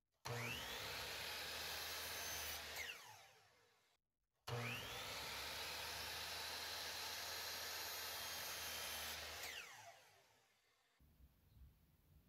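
A compound miter saw with a 15-amp motor is switched on twice. Each time the motor whines up to speed, runs steadily for a few seconds, then winds down with a falling whine once the trigger is released.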